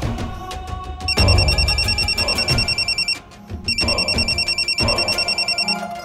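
A mobile phone ringing with a classic trilling ring tone, two rings of about two seconds each, over tense background music.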